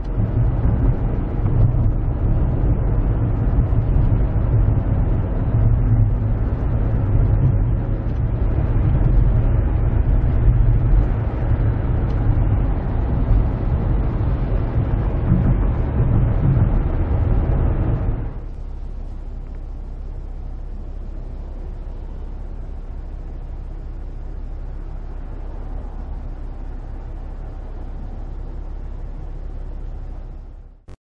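Car interior noise while driving: a steady low road and engine rumble heard inside the cabin. About 18 seconds in it drops abruptly to a quieter, even hum.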